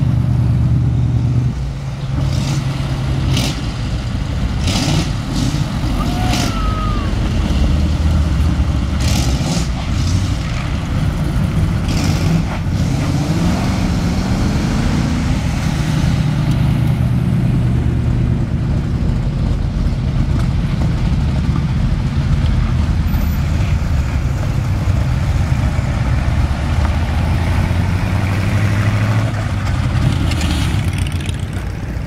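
Hot rod engines running loud and low as the cars drive past one after another. One engine's pitch rises about halfway through as it revs up.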